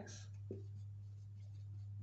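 Marker pen writing on a whiteboard: faint strokes with a short tap about half a second in, over a steady low hum.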